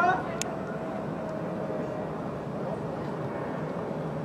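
A voice calling out as it begins, a single sharp click about half a second in, then steady background noise with a faint level hum.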